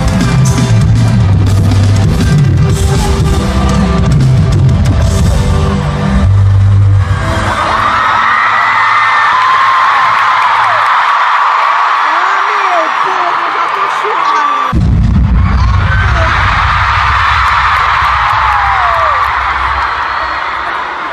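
Concert music over an arena sound system, with deep sustained bass notes, then a crowd of fans screaming in high voices from about seven seconds in. The bass drops out for a few seconds and comes back suddenly about fifteen seconds in, under continuing screams.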